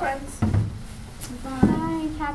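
A woman talking, with two dull knocks, one about half a second in and a louder one about a second and a half in.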